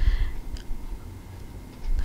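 Low handling rumble and soft bumps, with a faint tick about half a second in, dying down to quiet room tone.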